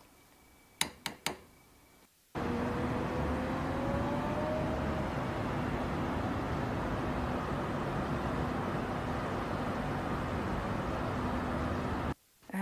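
A few faint clicks, then from about two seconds in a steady, loud din of road traffic and city noise, with a faint tone rising slowly soon after it starts.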